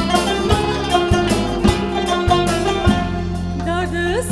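Armenian folk ensemble playing an instrumental passage: plucked kanun and oud with a woodwind melody over an even beat of low strikes about twice a second.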